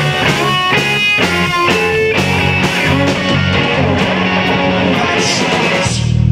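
Live pop/rock band playing an instrumental passage: electric guitars over bass and a drum kit, with no singing. Right at the end the low end gets noticeably louder.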